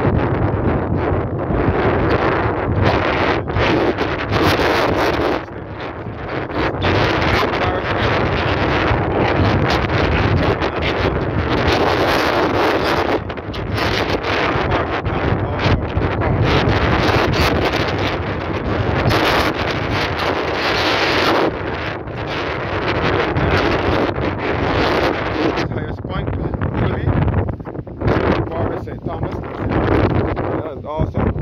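Strong gusty wind buffeting the microphone: a loud, continuous rush that swells and eases in gusts, with short lulls.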